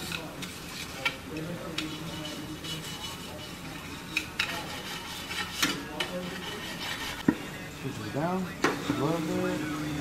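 Hand wire brush scrubbing the edge of a bare aluminium alloy wheel rim, a scratchy rasping in repeated short strokes. Voices talk in the background, most clearly near the end.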